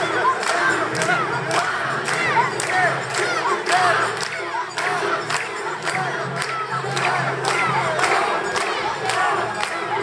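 A crowd of mikoshi bearers shouting a rhythmic carrying chant, many voices overlapping in short rising-and-falling calls, with sharp clicks about twice a second.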